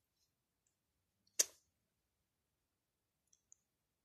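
A single short, sharp click about a second and a half in, with near silence around it and two faint ticks near the end.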